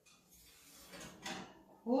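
Loaf pan being drawn off the wire rack of an oven: a faint scraping rattle that builds to a few sharper knocks a little over a second in.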